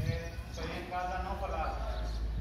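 A person's voice calling out in a drawn-out, wavering shout from about half a second in, over a steady low rumble.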